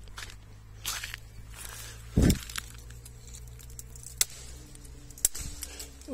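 A dry strawberry tree branch poked up through leafy foliage, with a low thump about two seconds in and then two sharp cracks near the end as the brittle wood snaps into pieces.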